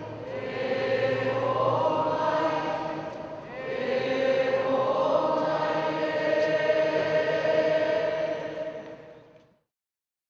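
Closing music of choral voices singing long held chords in two phrases, the second swelling about three and a half seconds in, then fading out near the end.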